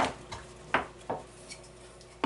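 Wooden beehive frame parts clacking together as side bars are pushed into the ends of top bars: several short, sharp knocks in the first second and a half.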